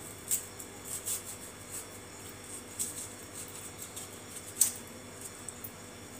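Knife cutting through watermelon on a cutting board: scattered soft clicks and scrapes, with one sharper tap about four and a half seconds in.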